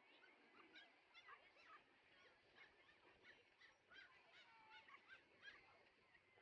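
Faint, busy chatter of animal calls: many short chirps and quick pitch glides overlapping throughout.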